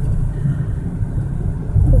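Steady low rumble of a car's engine and tyres heard from inside the cabin while driving at low speed.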